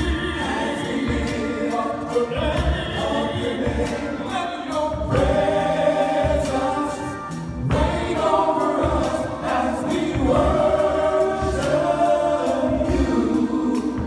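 Male gospel vocal group singing in close harmony over held chords, with bass and a steady drum beat behind them.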